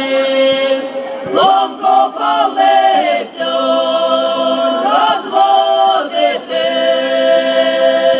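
Belarusian folk ensemble singing a Kupala (Midsummer) song together, mostly women's voices, holding long loud notes in phrases broken by short breaths.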